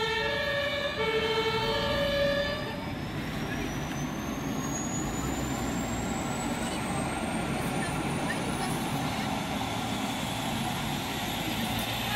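Two-tone emergency-vehicle siren (German Martinshorn) alternating between a low and a high note for about three seconds, then stopping. After it, a rescue helicopter's turbine spools up for start-up: a thin whine rising steadily in pitch for several seconds over a steady low hum.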